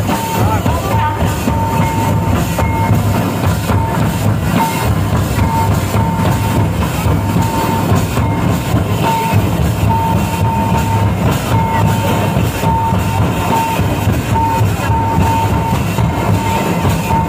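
Live Santali folk dance music: large drums beaten in a dense, steady rhythm, with a high note near 1 kHz sounding in short held stretches that break off and resume every second or so.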